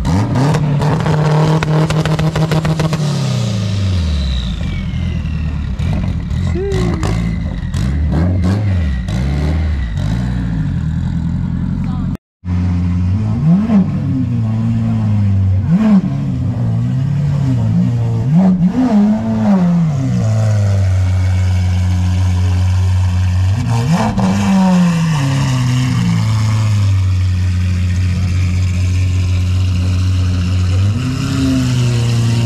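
A car engine holding its revs and then dropping away as a sports car pulls out. After a cut, a Lamborghini Aventador SVJ's V12 is blipped in several quick revs, then settles into a steady idle.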